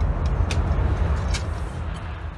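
Rattling, moped-like buzz of a Shahed-136 kamikaze drone's two-stroke engine, with two sharp cracks about half a second and about a second and a half in. The sound starts to fade near the end.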